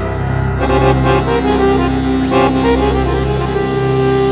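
Live ethno-jazz trio playing: a piano accordion carries sustained chords and melody over a synth bass line. Drums and cymbals come in about half a second in and keep a beat.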